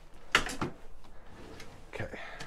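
Things being handled on a desk: a sharp clack about a third of a second in, a softer knock just after, and another knock near the end.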